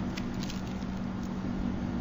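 Steady background noise of a room recording: an even hiss with a low steady hum and a few faint clicks.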